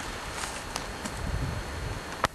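Footsteps and rustling in dry leaves and brush, with a few faint crackles and low rumbles over a steady outdoor hiss.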